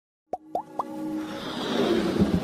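Animated logo-intro sound effects: three quick rising pops in a row, starting about a third of a second in, followed by a swell of noise that builds steadily louder.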